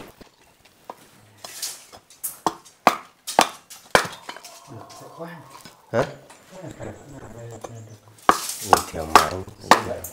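A large knife chopping and splitting sticks of firewood into kindling: sharp wooden knocks, about one every half second and irregular, with a pause in the middle of the stretch.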